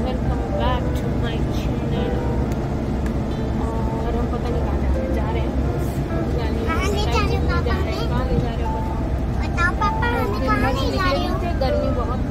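Steady low rumble of a moving car heard from inside the cabin, with high-pitched voices chattering midway and again near the end.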